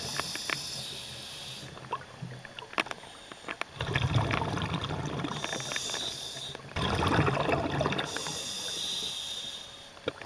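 A diver's breathing heard underwater: hissing breaths alternate with low, bubbling exhalations, about two cycles, with scattered small clicks throughout.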